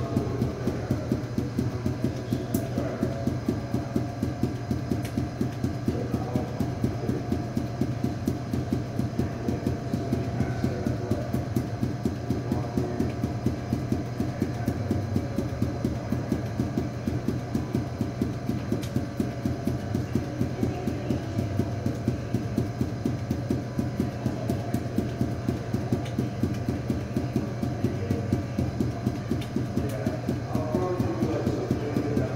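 Five juggling balls force-bounced off a hard floor, in a steady rhythm of about four thumps a second.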